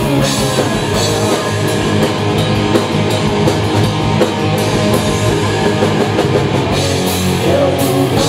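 Rock band playing live: two electric guitars, bass guitar and a drum kit in a loud instrumental passage with no singing.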